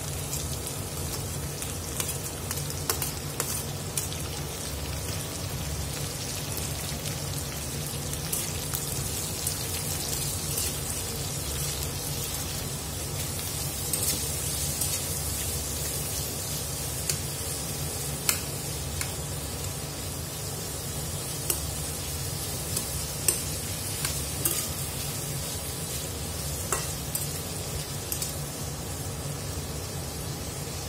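Sliced onions sizzling steadily in hot oil in a stainless steel kadai, stirred with a metal spatula that clicks and scrapes against the pan now and then. A steady low hum runs underneath.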